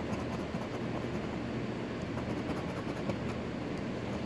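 A coin scraping the latex coating off a scratch-off lottery ticket, a steady raspy rubbing with no clear pauses.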